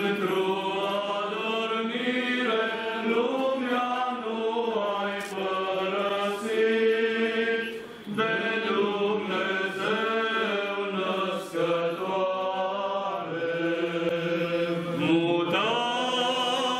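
Orthodox liturgical chant sung unaccompanied by a group of voices, held notes gliding from one to the next, with a short breath pause about eight seconds in.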